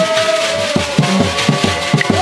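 Church ngoma music: drums beating about four strokes a second, with shaker rattles and voices holding a sung note.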